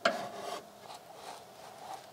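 A sharp click, then faint rubbing and scraping of a spanner working on the MGB's steering track-rod adjuster, turning it a few more turns to take out excess toe-in.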